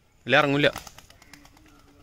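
A man's short, loud wordless call, half a second long with a wavering pitch, calling his flying pigeons down to the roof.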